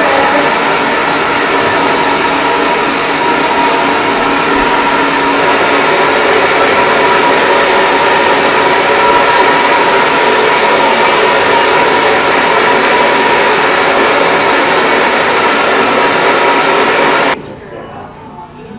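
Hand-held hair dryer running steadily close by, blow-drying wet hair: a loud, even rush of air with a faint steady whine under it. It switches off suddenly about a second before the end.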